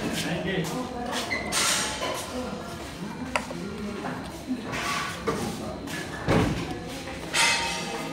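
Indistinct voices talking in a large room, with a few sharp clinks and knocks of steel tableware, a spoon on steel plates and bowls. The loudest knocks come about six and seven seconds in.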